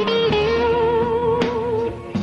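Live blues band playing: an electric guitar holds one long note over a steady bass line.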